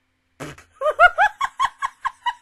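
A woman bursts out laughing: a sudden breathy burst about half a second in, then a run of quick high-pitched 'ha' pulses, about five a second, into the mic.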